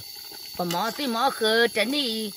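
A person's voice speaking, starting about half a second in, over a faint steady high tone.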